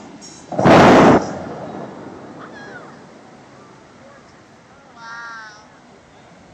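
Bellagio fountain's air-powered water shooters firing in one loud blast lasting about half a second, followed by the hiss of the water falling back, fading over a couple of seconds. Near the end comes a brief wavering high call.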